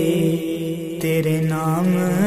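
A man singing a naat, a devotional song praising the Prophet, in long drawn-out held notes over a steady drone. His pitch steps up near the end.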